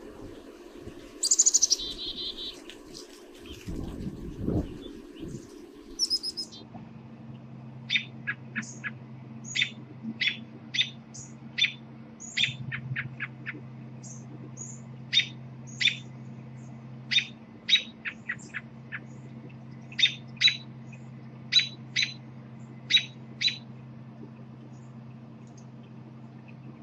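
Black-capped chickadee giving its chick-a-dee alarm call in the first few seconds. Then an American robin repeats sharp, downslurred alarm notes, one or two a second and often in pairs, over a steady low hum.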